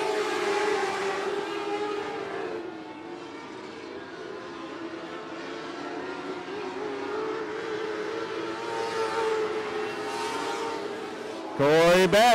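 Dirt-track race cars' engines running at speed around the oval: a steady, droning engine note that wavers slowly in pitch, easing off a little and then building again as the cars come round.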